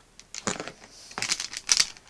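Blind bag packet being handled, crinkling in short irregular bursts that grow busier through the second half.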